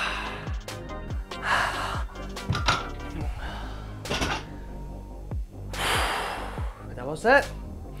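Background music with a steady beat, over hard breathing and exhales from the lifter straining through the last dumbbell reps. Dumbbells are set down on the floor with a thunk about four seconds in, and a short loud vocal exclamation comes near the end.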